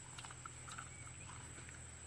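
Faint rural outdoor ambience: a steady high-pitched insect drone with scattered short chirps and soft clicks.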